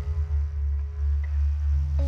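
Didgeridoo playing a steady low drone, its loudness pulsing and wavering. Near the end, sustained higher notes from another instrument come in.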